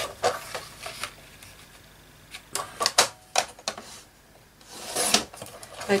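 Thin 220 gsm cardboard being handled on a paper trimmer: sharp clicks and taps in two clusters as the card is marked and set under the trimmer's clear guide arm. About five seconds in comes a short swish, the sliding blade running down its track to cut the card.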